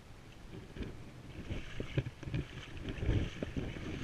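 Wind buffeting the microphone, with irregular small knocks and splashes of water against a jet ski's hull. Quiet at first, then busier and louder over the last two seconds.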